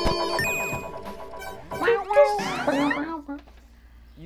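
Loud intro jingle of a web variety show, with sliding-pitch sound effects over the music. It dies away a little over three seconds in.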